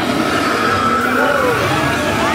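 Loud show soundtrack of an immersive tram-ride 3-D attraction: a dense rumbling bed with shrill sliding creature calls, one high call held for about a second in the middle.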